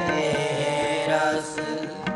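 Sikh kirtan: harmonium sustaining steady chords with a voice chanting over it, the music softening briefly near the end.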